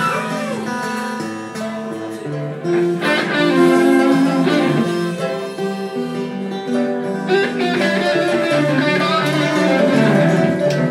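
A small blues band playing live without vocals: acoustic and electric guitars with a pipa and a lap-held string instrument, some notes sliding in pitch.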